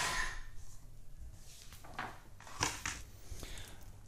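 Rotary paper trimmer at work: the cutting head sliding along its rail and slicing through a printed paper cover, a brief swell of cutting noise at the start, followed by a few light clicks and paper rustles as the sheet is handled.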